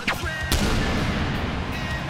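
Two sudden booming hits, one at the start and a second about half a second in, each trailing into a dense noisy rumble.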